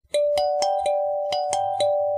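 Background music: a light melody of short, bell-like notes, each struck and then ringing on, starting a moment in.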